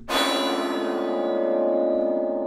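A single bell-like metallic tone, struck sharply just after the start and ringing on, its bright overtones fading away while the low notes hold. It is a sound effect in the narration's soundtrack.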